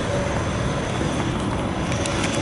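Steady outdoor background noise, an even rumble and hiss with no clear single source.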